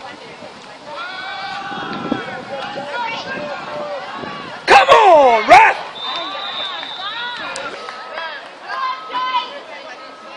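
Sideline shouting and cheering from spectators and players during a football play, with one loud yell close to the microphone about five seconds in. A referee's whistle sounds as one steady high tone for about a second and a half, about six seconds in.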